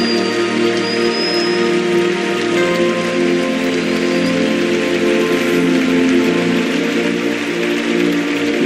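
Soft, sustained keyboard chords of worship music that hold and change slowly, over a steady hiss-like wash of noise.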